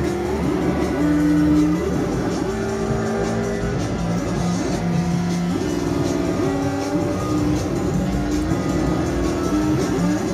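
Live amplified band music: a loud instrumental passage of held notes that slide from one pitch to the next.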